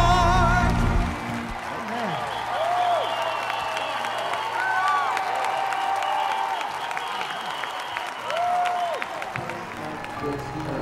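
Music with a held vibrato note stops about a second in and gives way to a large crowd applauding and cheering, with scattered rising-and-falling shouts over the clapping.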